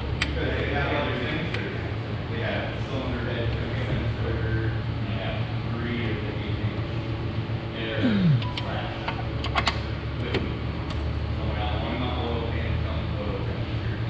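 Indistinct talking in the background over a steady low hum. A few sharp clicks about ten seconds in, as hand-fitted parts in the engine bay are worked.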